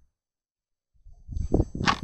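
Dead silence for about a second, then camera-handling noise: low rumbling with a few soft knocks and a short whoosh near the end as the handheld camera is moved around the engine bay.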